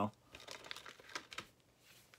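A plastic DVD case being handled, giving soft rustling and scattered small clicks.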